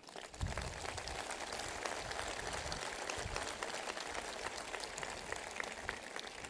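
A large seated audience applauding, a dense steady patter of many hands clapping that starts about half a second in.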